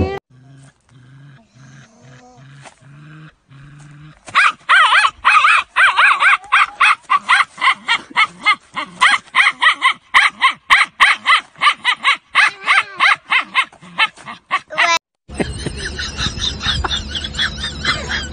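A dog yelping in a fast run of short, loud cries for about ten seconds, with only faint low pulsing sounds before it. Near the end it gives way to a rougher, noisier sound with a low hum.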